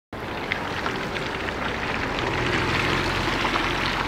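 A car driving on a wet road: tyres hissing and crackling on wet tarmac over a low engine hum, growing slightly louder toward the middle.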